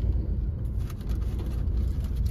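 Steady low rumble of a car heard from inside its cabin, with a few faint clicks.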